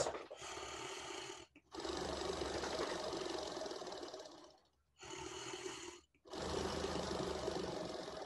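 Breathing through an Aerobika oscillating positive expiratory pressure (OPEP) device, twice: each time a short, quieter in-breath of about a second, then a longer, louder out-breath of about three seconds. This is airway-clearance breathing: the device makes the exhaled air vibrate against back-pressure to hold the airways open and loosen secretions.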